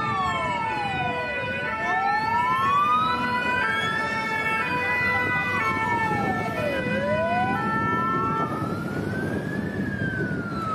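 Fire engine sirens: one slow wail rising and falling, each sweep taking about two and a half seconds, over a second siren of steady tones that step between pitches, with traffic noise beneath.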